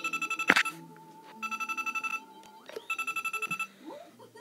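Electronic Deal or No Deal game's small speaker playing a trilling telephone-style ring, three bursts of rapid beeps, announcing the banker's offer. A sharp click about half a second in.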